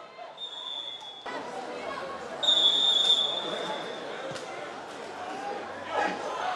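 A referee's whistle blown twice at one steady high pitch: a short blast near the start, then a longer, louder one about two seconds later. A steady hubbub of voices runs underneath.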